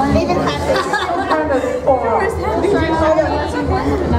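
Several people talking and calling out over one another: lively, indistinct chatter.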